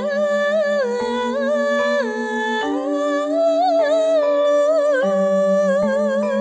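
Background music: a pulsing low note that shifts pitch every second or two under a hummed, wavering melody with vibrato.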